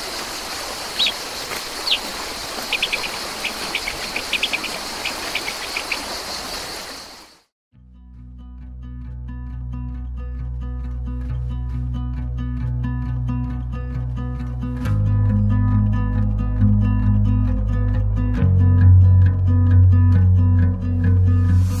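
Steady rushing outdoor background with small birds chirping and a thin, steady high insect-like whine. It cuts off suddenly about seven seconds in. Instrumental music with guitar then fades in, and deeper bass notes join about halfway through and again near the end.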